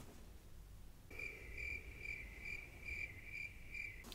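A cricket chirping in an even rhythm of about two chirps a second. It starts suddenly about a second in, after near silence.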